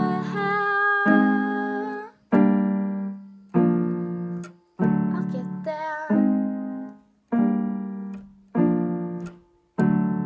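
Closing bars of a girl's original song: a sung voice holding a few long notes over accompaniment chords struck about once every second and a bit, each ringing and fading. The last chord, near the end, is left to ring out.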